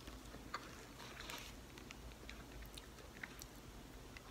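A person chewing a mouthful of powdery, finely gritty edible clay (Mavu unbaked clay) with the mouth closed. The chewing is faint, with a few small scattered mouth clicks.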